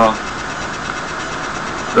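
Steady, even background hiss with no distinct events during a pause in speech; a man's voice trails off at the very start and comes back at the very end.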